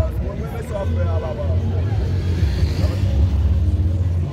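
A low rumble that keeps coming and going under several people talking in the street.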